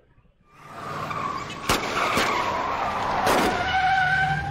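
Car tyres skidding and squealing over engine noise in a drama soundtrack, swelling up from near silence about half a second in. A few sharp cracks come in the middle, and a steady squeal near the end.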